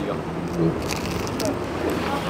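Outdoor city street background noise: a low steady hum, with a few faint crackles of paper napkin about a second in.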